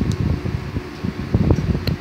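Rumbling handling noise with soft rustles and a few sharp clicks, one about a second and a half in, as a tarot card is drawn from the deck and held up close to the microphone.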